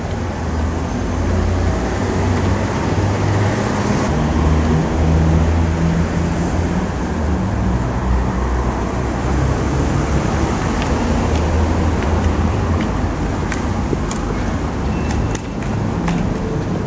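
Fire truck's diesel engine running with a steady low rumble, a few light clicks sounding in the last few seconds.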